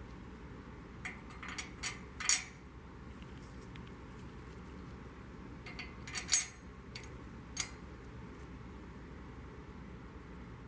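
Metal tools clinking against each other and on a workbench as they are handled, in two short bursts of sharp clinks, one about a second in and one about six seconds in.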